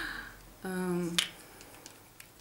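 A woman's brief wordless voice sound, then a single sharp plastic click about a second in, from mascara tubes being handled, followed by a few faint ticks.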